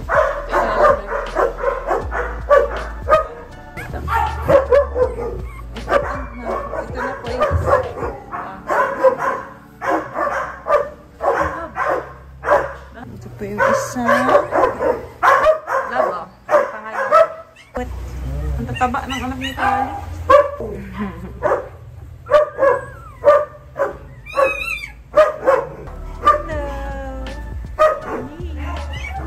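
Background song with a sung vocal over a steady bass line.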